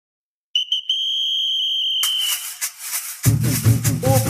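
Opening of a bumba meu boi toada: a whistle blown in two short blasts and one long one. Rattling percussion starts at about two seconds, and deep drums come in with a heavy beat just after three seconds.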